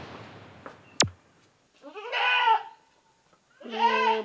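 A goat bleating twice: a short, quavering bleat about two seconds in and a longer, steadier one starting near the end. Before the bleats a hiss fades out and there is a single sharp click about a second in.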